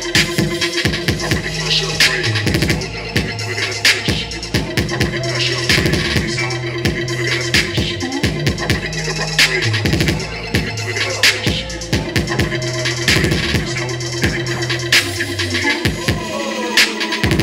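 Hip hop music with turntable scratching over a steady drum beat and bass line.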